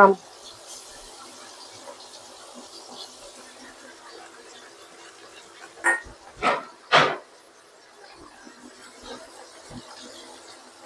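Faint steady sizzle of minced shallots and garlic frying in oil in a wok. Three short voice-like sounds come close together about six to seven seconds in.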